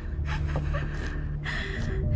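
A person gasping twice, about a second apart, over a low steady drone.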